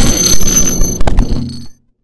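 Subscribe-button outro sound effects: a high bell-like ringing that fades out, then two sharp clicks about a second in over a low rumble, which cuts off suddenly into silence near the end.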